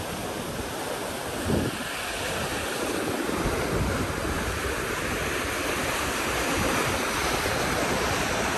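Steady rush of a fast-flowing, swollen canal, loud, with some wind on the microphone.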